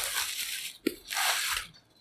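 Bubble-wrap packing crinkling in two long rustles as a part is pulled free of it, with a single sharp click between them.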